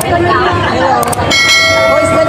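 A subscribe-button sound effect: mouse clicks, then a bell ring that starts suddenly about a second and a half in and rings on, over chatter.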